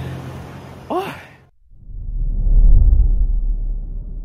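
A man's short voiced exhale, like a sigh, over a steady low background hum that cuts off about a second and a half in. Then a deep rumbling sound effect swells to a peak near the end and begins to fade.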